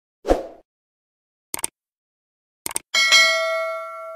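YouTube subscribe-and-bell animation sound effect: a short dull thump, sharp clicks, then a bell ding that rings out and fades over about a second and a half.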